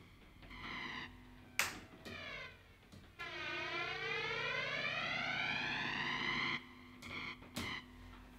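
Electric guitar, a Fender Telecaster through a Boss BF-3 flanger pedal, sounding a few short notes, then a held note about three seconds in whose jet-like flanger sweep dips and climbs again before the note stops. More short notes follow near the end.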